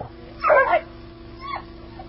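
A dog yelping: a short, sharp yelp about half a second in and a briefer falling whine near the middle, over a steady low hum.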